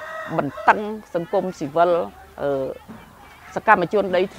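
Speech: a person talking steadily in Khmer.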